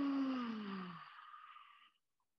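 A woman's lion's-breath exhale: a long, forceful 'haaa' out through the open mouth, sighing with voice and dropping in pitch for about a second, then fading into plain breath.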